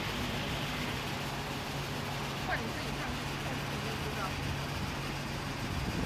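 Petrol pump dispensing fuel through the nozzle into a car's tank: a steady low hum over an even rushing noise.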